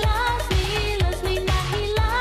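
Italo disco dance music from a megamix: a four-on-the-floor kick drum at about two beats a second under a wavering melody line.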